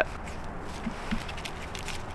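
Quiet outdoor background noise, with a few faint light clicks.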